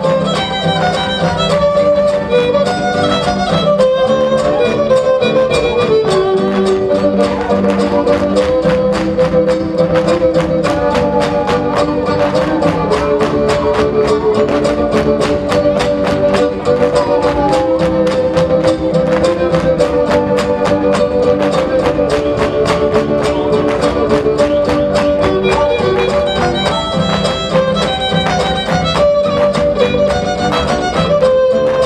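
Huapango folk music: a violin plays a wandering melody over a fast, dense clicking rhythm.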